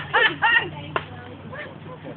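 Onlookers' voices exclaiming and laughing, then a single sharp click about a second in, over a steady low hum.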